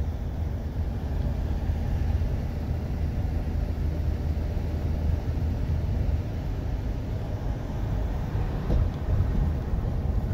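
Steady low rumble of a car or pickup driving at road speed, tyre and engine noise heard from inside the cabin.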